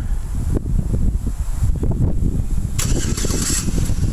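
Wind buffeting the microphone: a loud, uneven low rumble, with a brief burst of hiss about three seconds in.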